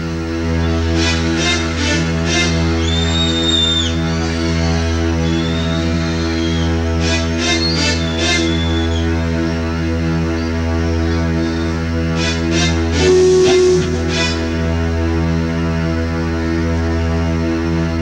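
A live rock band plays a slow passage built on a held low chord, with guitar. Brief bright accents come in three clusters.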